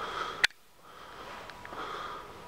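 Breaths close to the microphone, heard twice, near the start and near the end. A sharp click about half a second in is followed by a brief drop in sound.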